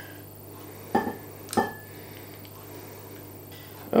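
Two knocks of a wooden spoon against a mixing bowl about half a second apart, each with a brief ring, as thick pudding mixture is scraped out of the bowl. A faint steady hum lies underneath.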